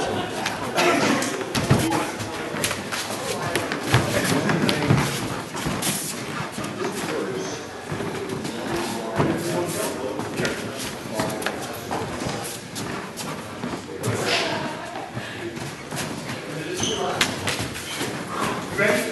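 Two men grappling barehanded on floor mats: repeated thuds, stamps and scuffs of feet and bodies colliding, with voices in a large hall.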